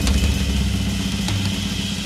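Background music from a TV drama score: a low, steady held drone.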